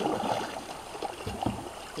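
Kayak paddle strokes dipping and splashing in the river, with a few short splashes over the steady wash of flowing water.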